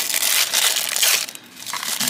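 Thin plastic bag being crinkled and squeezed between the fingers to work a small part out of it. The rustling is dense for about the first second and a half, then dies down.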